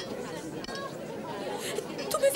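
Faint background chatter of several voices, with no single speaker standing out.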